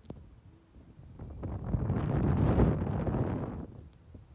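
Wind buffeting the microphone as the ride swings the camera through the air: a low rumble that swells from about a second in and dies away near the end.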